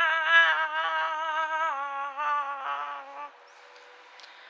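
A woman humming a wordless tune, one voice stepping between held notes; it stops about three seconds in.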